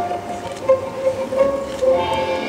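Live orchestra playing light holiday pops music, a run of short, separate notes.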